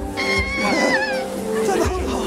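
A high, wavering squeal lasting about a second, falling in pitch at its end, over steady background music.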